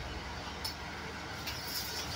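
JLA Smart Wash 16 front-loading washing machine on its third rinse: the drum turns with a steady low hum while the rinse water sloshes and splashes inside, with a few short splashes about half a second in and again past the middle.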